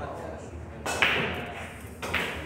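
A single sharp knock about a second in, with voices in the background.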